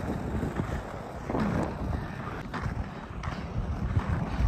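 Wind on the microphone over the steady rumble of inline-skate wheels rolling on an asphalt path.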